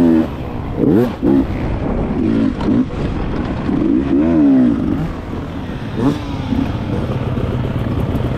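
Enduro motorcycle engine heard on board, revving up and down in repeated surges as the throttle is worked, then running lower and steadier for the last few seconds. A couple of short knocks are heard over the engine.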